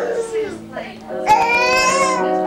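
A young child's high-pitched, drawn-out cry, rising slightly in pitch, starting about a second and a half in, after shorter child vocal sounds near the start. Steady background music runs underneath.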